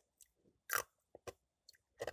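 Ice being bitten and crunched by a child: about five short crunches, the loudest about three-quarters of a second in.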